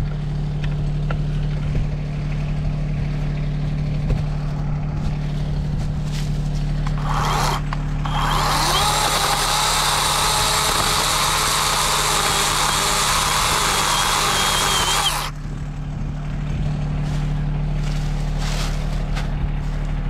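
Worx 40-volt cordless chainsaw with an 18-inch bar blipped briefly about seven seconds in, then cutting steadily into a small poplar trunk for about seven seconds with a high motor whine, stopping suddenly. Under it a John Deere 2320 compact tractor's diesel engine idles steadily throughout.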